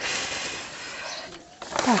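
Plastic sheeting rustling as it is pulled back off a wooden rabbit nest box. The rustling starts suddenly and fades out over about a second and a half.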